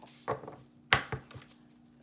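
Tarot cards knocked down against a tabletop: one sharp tap about a second in, with a softer one just after.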